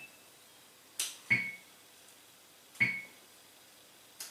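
Metronome set to 40 beats per minute, ticking once every second and a half with short, sharp clicks.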